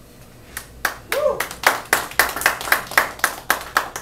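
Audience applause at the end of a song: distinct hand claps at about four a second, beginning about half a second in, with a short vocal call about a second in.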